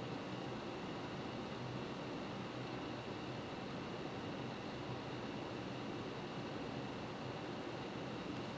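Steady faint hiss of room tone with a low hum, unchanging throughout, with no distinct sounds.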